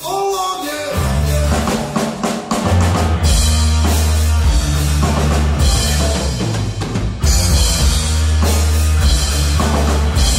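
Live heavy rock band playing an instrumental passage on drum kit, distorted electric guitars and bass. After a held note, the full band comes in about a second in and keeps up a heavy, steady groove.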